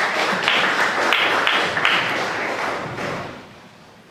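Audience applauding, a dense patter of many hands clapping that dies away about three and a half seconds in.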